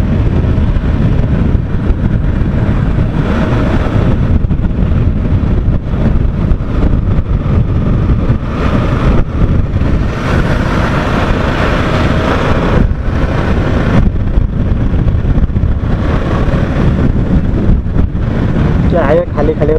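Loud steady wind roar on the microphone of a camera mounted on a moving Yamaha R15 V3 motorcycle, with the bike's 155 cc single-cylinder engine running underneath.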